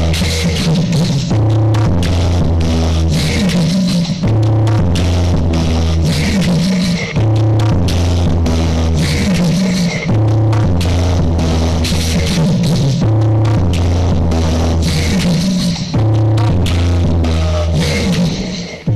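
Loud, bass-heavy electronic dance music played through a competition rig of small stacked speaker cabinets (a bulilit sound system), its deep bass line repeating in phrases every few seconds under a steady beat.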